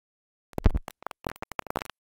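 A turntable stylus is set down on a spinning vinyl record, landing with a thump about half a second in. Irregular crackles and pops from the record groove follow.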